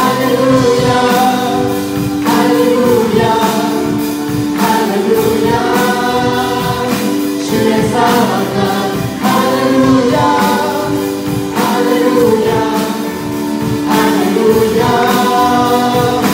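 Group of young voices singing a worship chorus in harmony, the words 'hallelujah' on the line being sung, over a steady beat and instrumental accompaniment.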